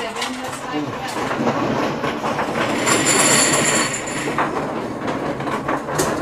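Automatic mahjong table shuffling its tiles: a steady, dense rattling clatter of plastic tiles churning inside the machine, brighter and higher for a moment about three seconds in.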